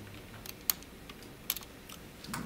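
About five sparse, sharp keystroke clicks on a keyboard, the loudest a little under a second in, over a quiet room background.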